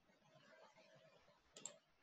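Near silence with a quick double click of a computer mouse about one and a half seconds in.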